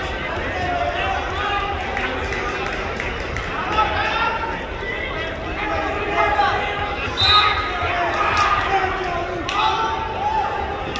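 Several voices shouting and calling out over one another, typical of coaches and spectators urging on wrestlers at a youth wrestling match, with a thud near the end.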